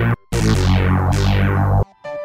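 Synthesizer "game over" sting: a short chord hit, then a longer held chord with a falling sweep over it, cutting off shortly before the end.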